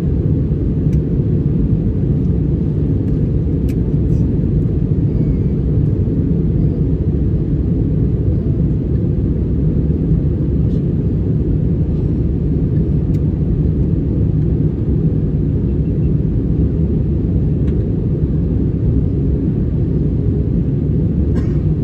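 Steady low rumble of a jet airliner in flight, engine and airflow noise heard inside the passenger cabin, with a few faint clicks.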